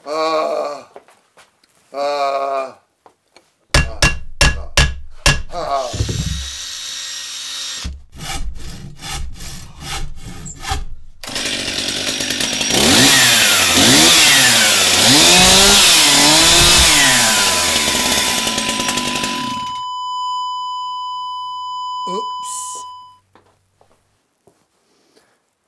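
A run of edited sound effects: two short vocal sounds from a person, a quick series of sharp knocks, then a long loud harsh noise with wailing glides that rise and fall over it, and a steady high tone that holds for several seconds before cutting off.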